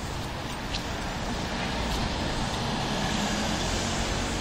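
Steady road traffic noise, growing a little louder about halfway through.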